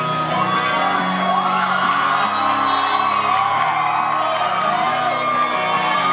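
Rock band playing live in a hall, with distorted electric guitar, bass and drums in the instrumental intro before the vocals come in. Fans close to the microphone whoop and scream over the music.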